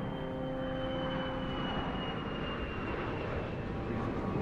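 Sound effect of a small airplane flying past, a steady engine drone with a thin high whine that slowly falls in pitch. Fading music tones are heard under it in the first second or so.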